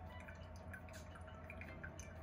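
Sencha tea dripping from a paper-filtered tea dripper into the brewed tea in a glass server below: faint, irregular drops, a few a second, over a low steady hum.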